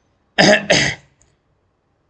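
A man coughs twice in quick succession, about half a second in.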